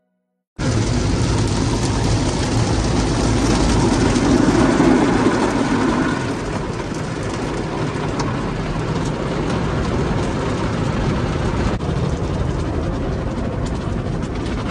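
Automatic car wash heard from inside the car's cabin: water jets and foam washing over the windshield and body, a steady loud wash of noise with a low rumble. It starts suddenly just after the beginning, grows louder for a few seconds, then settles slightly.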